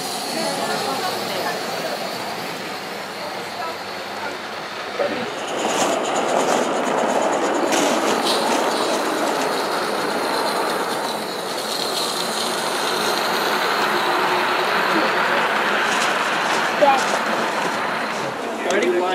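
G-scale model train running on garden-railroad track: a steady rolling noise that grows louder about five seconds in, with scattered clicks and a thin high wheel squeal.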